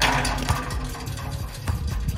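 Background music with a steady beat, with a loud crash right at the start that fades over about half a second.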